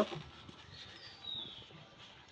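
Quiet handling of a plastic air-pruning pot as its studded wall is pressed and fitted onto the perforated base. A short, high, falling whistle sounds about a second in.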